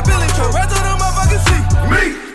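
Hip hop track with a rapping voice over deep bass notes that slide down in pitch several times.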